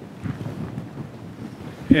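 Rough, breathy rustling on a handheld microphone as it is handled, rising in level, until a man starts speaking into it near the end.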